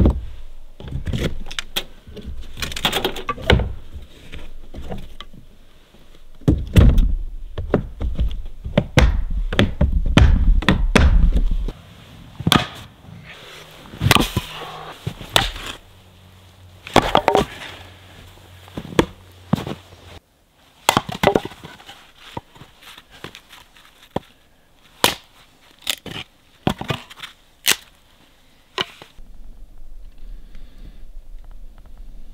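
Firewood being split into kindling: a series of sharp wooden cracks and knocks at irregular intervals, some of them loud.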